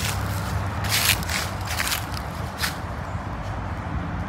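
Footsteps on a path strewn with dry fallen leaves: a few short, irregular crunches over a low steady rumble.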